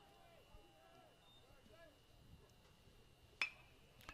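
A single sharp ping of a metal baseball bat striking the pitch a little over three seconds in, a line-drive base hit, over faint crowd chatter.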